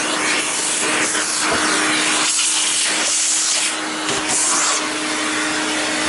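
Vacuum cleaner running with a steady motor hum under the rush of air, its nozzle sucking dust from a desktop computer case's vents. The rush dips and swells several times as the nozzle is moved over the vents.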